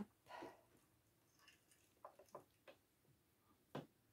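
Mostly near silence, with a few faint clicks from a small crochet hook working yarn stitches against the plastic needles of a circular knitting machine as stitches are latched back up into ribbing. There is a cluster of light ticks about two seconds in and one sharper click near the end.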